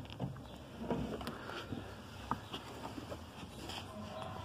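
Scattered light plastic clicks and rustles of a scan-tool cable connector being handled and fitted into the truck's OBD1 diagnostic connector under the dash.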